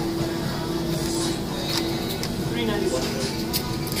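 Arcade background sound: machine music with a steady held tone that fades out about halfway through, voices in the background, and a few faint clicks.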